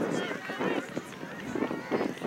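Several indistinct voices overlapping: people talking and calling out around an outdoor soccer field, no single speaker clear.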